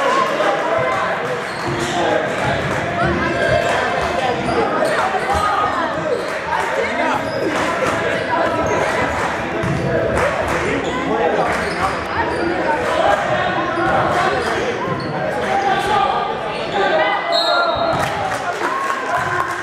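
A basketball bouncing on the hardwood floor of a gymnasium during play, with players' and spectators' voices echoing through the hall. A short high whistle sounds near the end as play stops.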